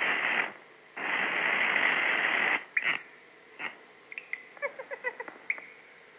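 Cartoon sound effects: a long hissing rush of noise, then a couple of sharp clicks and, about four seconds in, a quick run of short plinking notes.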